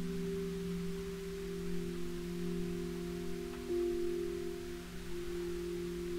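Background music: soft, sustained chord tones held steadily like a bowl or bell drone, with one note shifting to a lower pitch about two thirds of the way through.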